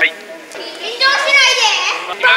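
Children's voices: a group of kids talking and calling out at once, high-pitched, louder in the second half.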